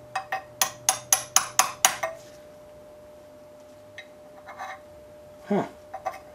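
Hammer blows on a steel punch, driving a pressed-in splined piece out of a Ford F100 clutch Z bar held in a bench vise: about nine quick metallic strikes, around four a second, in the first two seconds, then a pause with a few faint clinks.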